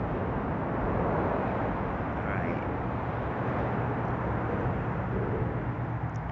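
Steady outdoor rumble and hiss, with a low hum that comes in about halfway through.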